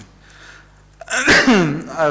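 A person sneezing once, about a second in: a sharp, noisy burst with a voice falling in pitch.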